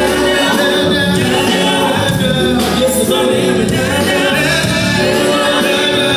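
Live gospel song: a male lead singer with a group of backing singers over instrumental accompaniment.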